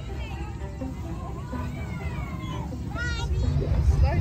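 Children's high-pitched voices calling out without clear words, with a rising squeal about three seconds in, over background music.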